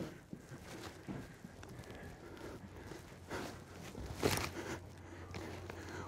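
Soft footsteps on gravel, a few scuffing steps with the clearest about three and four seconds in, over a faint low hum.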